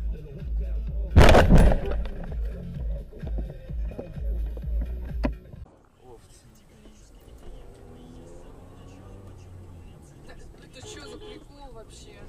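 Dashcam audio from inside a moving car: a heavy low rumble with music, broken about a second in by a brief, loud noise. About five and a half seconds in the sound cuts to a quieter car cabin with voices.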